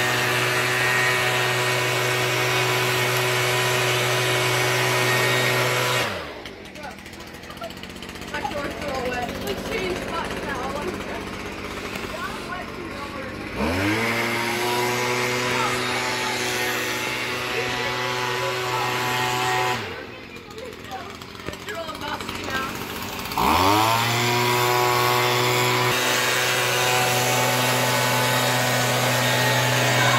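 Gas-powered handheld leaf blower running at full throttle, its steady engine note twice falling away as the throttle is let off, then winding back up with a rising pitch to full speed.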